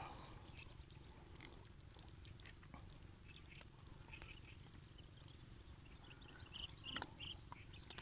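Near silence: faint outdoor background hum, with a few soft clicks and rustles in the last two seconds or so.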